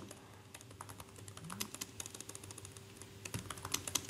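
Typing on a computer keyboard: a run of quick, light key clicks.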